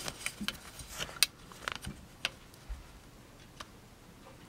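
Scattered light clicks and taps of handling: a plastic ruler being set down and shifted into place against an open pocket knife on a cloth mat. The sharpest click comes about a second in, and the taps thin out toward the end.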